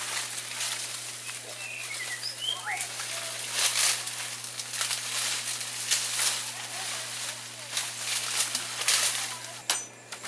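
Dry, dead banana leaves rustling and crackling in irregular bursts as they are torn from the plants and gathered up by hand, with a steady low hum underneath.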